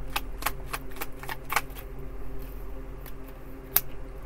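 Tarot cards being shuffled by hand: quick papery clicks of cards slipping through the fingers, busiest in the first two seconds, with one sharper snap near the end.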